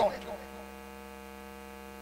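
Steady electrical mains hum: a buzz with many evenly spaced overtones that holds unchanged once a spoken word dies away near the start.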